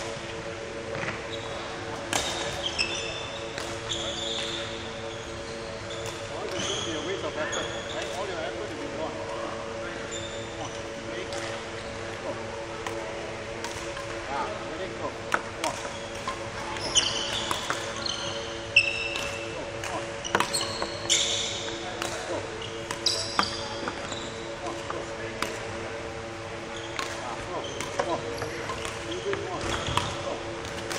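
Court shoes squeaking in short bursts and feet thudding on a wooden badminton court floor during footwork, with sharp clicks mixed in; the squeaks come thickest in the middle stretch. A steady hum runs underneath.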